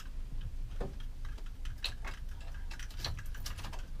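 Light, irregular clicks and ticks in a motorhome's cab as the driver handles the ignition key, over a faint low hum, with the engine not yet running.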